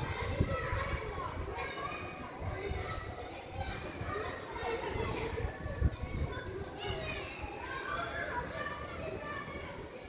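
Several children's voices calling and shouting as they play, with a low thump about six seconds in.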